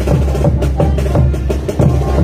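Live parade band music with a bass drum and a quick, steady percussive beat under the melody.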